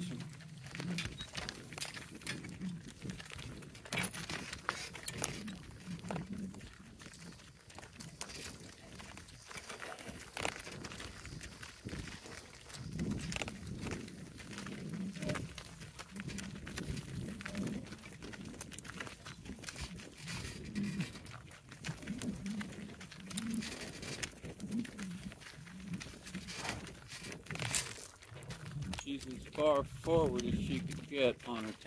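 Donkeys walking a gravel road in harness: irregular crunching hoof steps with scattered sharp clicks and low muffled thumps.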